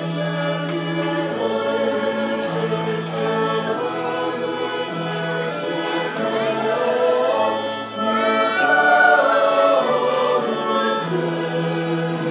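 A church choir singing a hymn in Romanian, accompanied by violins, flute and keyboard. The held bass notes change every second or two, and the music swells louder about eight seconds in.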